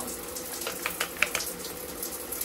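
Running water splashing over a plastic lotion pump held in the hand as it is rinsed out, with a few brief sharper splashes about a second in.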